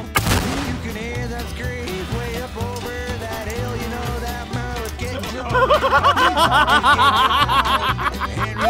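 A single loud blast about a quarter of a second in, over country-style background music that gets louder about five and a half seconds in.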